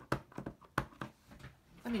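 Clear acrylic block holding a photopolymer stamp tapped and pressed repeatedly onto a plastic-cased ink pad, a quick run of light taps and clicks.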